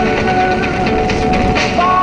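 Music from the car radio, heard inside a BMW E36's cabin, with sustained held notes that change pitch near the end. Under it runs a steady low rumble of engine and road noise as the car drives on snow.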